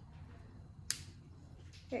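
Small plastic pieces of a miniature toy shopping basket snapping together: one sharp click about a second in, then a fainter click near the end.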